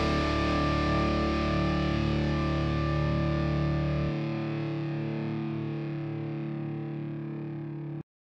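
The closing chord of a rock song: a distorted electric guitar chord held and slowly fading, the lowest bass note dropping out about halfway, then cut off abruptly at the end.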